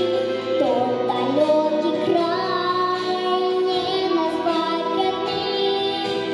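A young girl singing a melodic song into a microphone over instrumental backing music.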